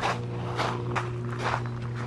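Footsteps on loose gravel, a few steps at a walking pace.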